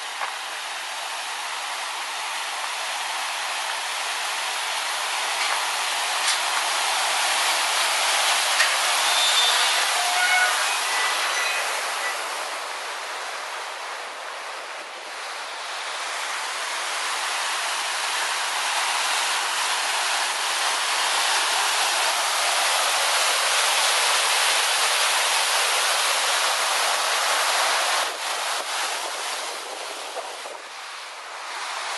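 Mountain creek waterfall rushing over rocks in a gorge: a steady rush of water that swells as it nears, dips briefly about halfway, swells again and falls away near the end.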